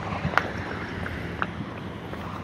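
City street traffic noise with wind buffeting the microphone, and two light clicks about a second apart.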